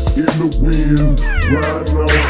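Hip hop beat without rapping: deep bass, drums and a pitched melody, with a falling, sliding tone near the end.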